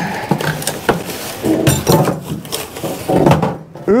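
Cardboard packing being pulled out of a shipping box: rustling and scraping with a few sharp knocks.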